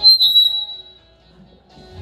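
Microphone feedback through the PA: a sharp, high-pitched squeal that starts suddenly, wavers briefly and fades out within about a second.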